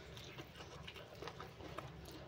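Close-miked chewing of a mouthful of rice and greens: faint, wet mouth clicks and smacks in an uneven run.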